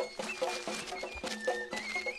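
Tajik folk music for the eagle dance: a high eagle-bone flute melody over a quick, even beat.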